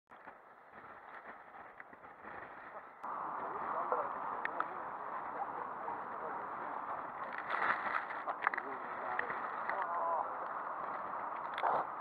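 A steady rushing noise that starts abruptly about three seconds in, with indistinct voices faintly over it.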